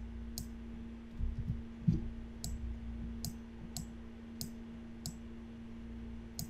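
Computer mouse clicks, about six sharp, irregularly spaced clicks as shapes are selected and dragged, over a steady low electrical hum.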